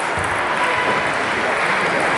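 Steady background noise of a busy sports hall, with voices blurred together and no distinct ball strikes.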